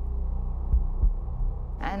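Low, dark drone from a documentary underscore, with two deep heartbeat-like thumps close together a little under a second in.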